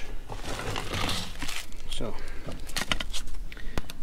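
Rustling and a few light clicks of scissors and materials being handled, with a rustle about a second in and scattered clicks in the second half.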